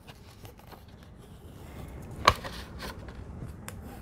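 Floral washi tape pulled off its roll and laid along the edge of a paper page, with faint paper rustles and light ticks and one sharp click a little over two seconds in.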